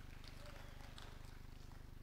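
Faint room tone: a steady low hum with a few soft ticks.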